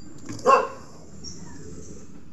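A single short dog bark about half a second in, over a faint steady background hum.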